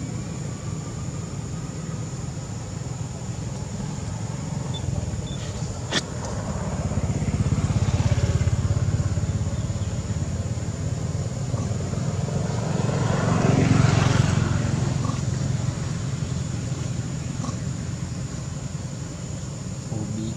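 Road traffic: a steady low rumble with motor vehicles passing, swelling twice, the louder pass about two-thirds of the way in. A single sharp click about six seconds in.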